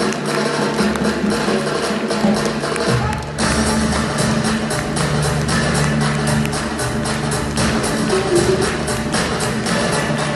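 Caucasian folk dance music with a fast, steady drumbeat of about four strokes a second. The bass and beat grow fuller about three seconds in.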